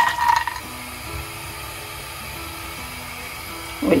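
Cashew pieces tipped from a glass bowl into a frying pan, with a brief clatter and ringing at the start; then soft background music with a slow, stepped melody.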